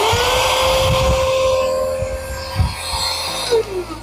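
Portable cordless handheld vacuum switched on. Its small motor whines up to a steady high pitch with a rush of air, runs for about three and a half seconds, then winds down near the end.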